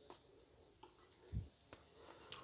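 Near silence with faint scattered clicks and one low thump past the middle.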